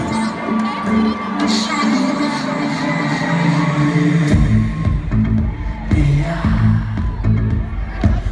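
Live pop music in a large concert hall, heard from among the audience, with the crowd cheering and whooping over a sustained keyboard intro. About halfway through a heavy bass and a steady beat come in as the full band starts.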